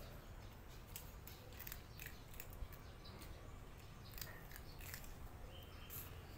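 A cat chewing crunchy food: a faint, irregular run of short crisp clicks and crunches.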